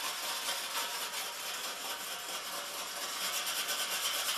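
A pumice scouring stick scraping back and forth over a wet stove top around a burner opening, a steady gritty rasping in quick strokes. It doesn't sound real good, but it does the ceramic finish no harm.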